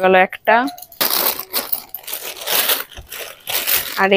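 Thin plastic clothing packet crinkling and rustling as it is handled and opened, an irregular rustle lasting about three seconds after a brief word.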